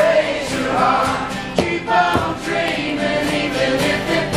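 Unamplified live song: a strummed acoustic guitar with several voices singing together.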